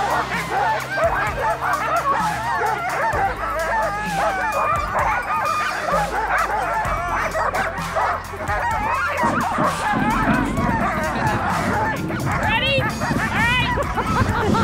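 A team of harnessed sled dogs barking and yelping, many voices overlapping, the excited clamour of dogs waiting to run. Background music with steady low notes plays underneath.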